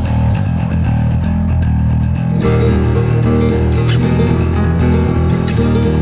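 Instrumental passage of a metal song: plucked guitar lines over bass guitar. A busier, brighter part with quick repeated hits joins about two and a half seconds in.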